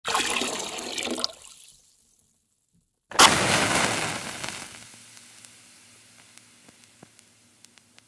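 Animated logo intro sound effects: a noisy rushing whoosh that fades away within the first two seconds, then after a short silence a sudden loud hit about three seconds in with a long fading tail, followed by a few faint ticks.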